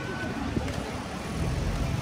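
Street ambience: indistinct background voices over traffic noise, with a low rumble rising in the second half.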